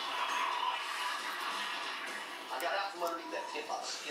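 Television sound playing in the background: music with a voice that comes in past the halfway point, quieter than close speech.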